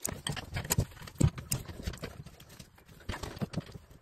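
Pliers and metal fittings clicking and knocking irregularly as water pump pliers grip and work the nut on a chrome towel-rail valve, with a quieter stretch in the middle.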